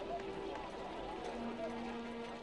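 Faint, indistinct voices over a low background hiss, with a low held note coming in about halfway through.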